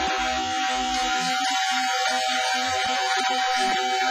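Recorded rock song with guitar: a single high note held steady throughout, over a run of shorter plucked notes lower down.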